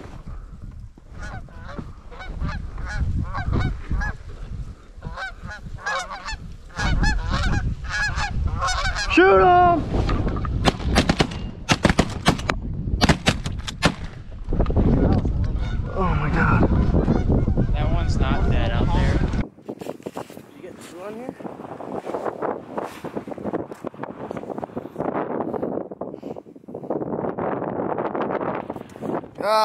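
A flock of geese honking overhead, then a rapid volley of shotgun shots from several hunters about ten seconds in.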